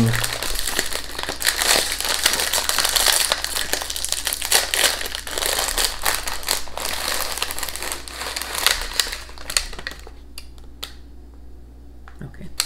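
Plastic biscuit wrapper crinkling and crackling as it is pulled open by hand, dying down to a few faint rustles for the last couple of seconds.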